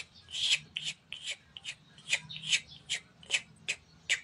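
Short scratchy rustles, about two or three a second, as a wire scalp massager is worked up and down over the hair close to the microphone.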